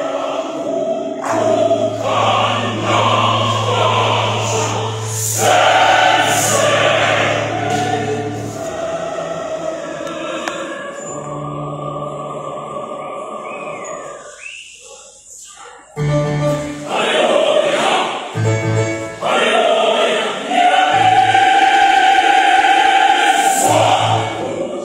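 Large mixed choir of women and men singing in parts, with steady low bass notes under the upper voices. A little past halfway the singing drops to a brief hush, then comes back in strongly.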